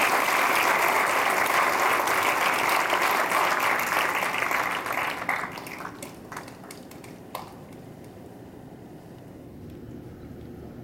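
Audience applause, dense for about five seconds, then thinning out to a few last scattered claps and dying away to low room noise.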